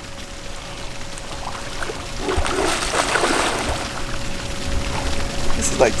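Water sloshing and splashing as a swimmer ducks under the surface, getting louder about two seconds in.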